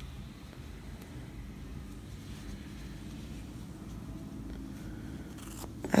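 Faint, steady low rumble of background room noise, with a couple of short clicks near the end.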